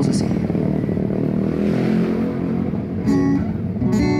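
Acoustic guitar starting a song: soft playing under a low steady rumble, then a ringing strummed chord about three seconds in and another at the end.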